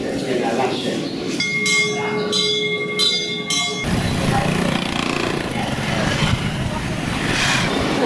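Background chatter of people amid general ambient noise. In the middle a steady pitched tone with overtones, like a horn, is held for about two seconds and cuts off abruptly.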